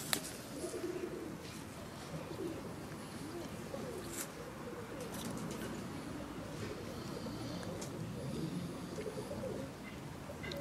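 A bird cooing steadily in the background, low wavering calls repeated throughout. A tortoise biting and chewing apple adds a few soft clicks, the clearest about four seconds in.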